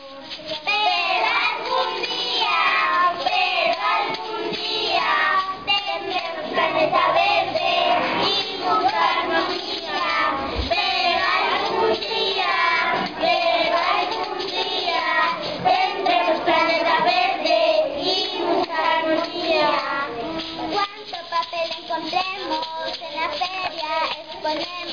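A group of young children singing a song together, their voices carrying a continuous melody.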